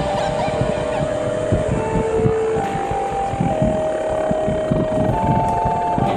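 Electric Onewheel hub motors whining at several steady pitches that step up and down as the boards speed up and slow. Under them is a constant rumble of the tyres on the dirt trail and wind buffeting the microphone.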